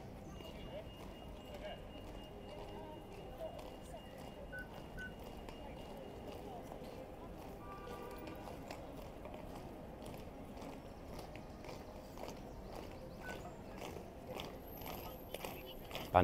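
Faint outdoor ambience: the boots of a marching military band stepping on the road and cobbles, with onlookers murmuring and no band music.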